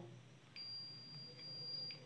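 Digital multimeter's continuity beeper giving one steady high-pitched beep for about a second and a half as the test probes bridge a diode on the charger board. The beep signals a near-zero reading, the sign of a shorted diode. Faint clicks of the probes touching down and lifting off mark its start and end.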